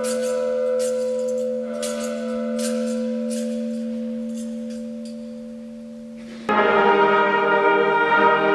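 Bell rung at the elevation of the chalice during the consecration: struck a little more than once a second for the first few seconds, its ringing tone then fading away. About six and a half seconds in, a brass ensemble with tuba starts playing loudly.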